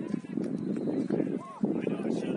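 Voices of players and spectators calling out across an open soccer field, with a short shout about one and a half seconds in, over a constant rushing noise.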